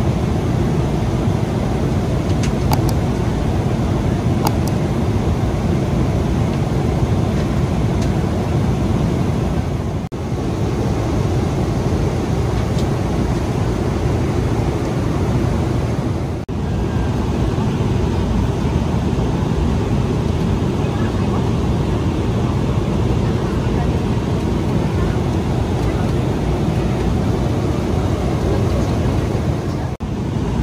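Steady cabin noise of a Boeing 777-200LR airliner in cruise: a dense, low rush of engine and airflow noise. It dips briefly twice, about ten and sixteen seconds in.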